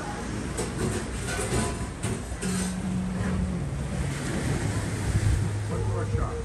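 Small waves washing and splashing against the rocks of the shoreline, with wind on the microphone. From about two and a half seconds in, low held tones that step down in pitch run underneath.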